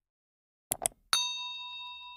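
Subscribe-animation sound effects: a quick double click, then a single notification-bell ding that rings on and slowly fades.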